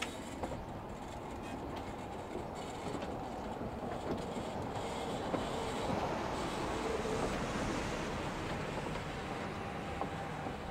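A train running on rails out of view, a steady rumble with occasional wheel clicks, growing slowly louder until about seven seconds in and then easing off slightly.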